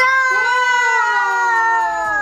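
A toddler drawing out the word 'pagotó' (ice cream) in one long, high call that slides down in pitch near the end.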